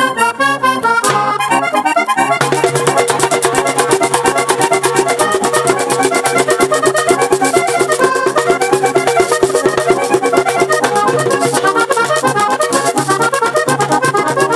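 Button accordion playing a fast vallenato puya, alone at first, then joined about two seconds in by rapid, steady percussion.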